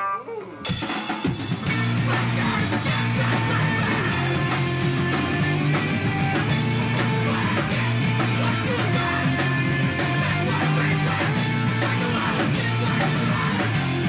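Live post-hardcore band kicking into a song: distorted electric guitar, bass guitar and drum kit come in within the first second or two, then play loud and steady.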